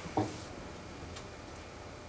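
A single short, dull knock about a fifth of a second in, then a faint tick about a second later, over a steady low room hum.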